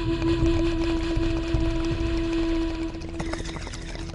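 Logo-sting soundtrack: one held droning tone over a low rumble, with scattered crackling ticks near the end.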